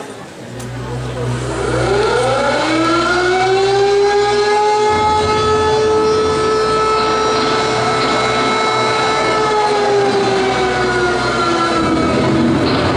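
Tulum bagpipe starting up: a single reedy note that slides up in pitch as the bag fills, then holds steady for about nine seconds and sags slightly near the end.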